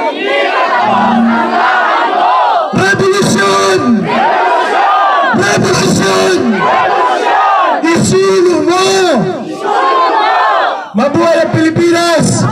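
Crowd of protesters shouting a slogan together, in loud repeated bursts about every two to three seconds.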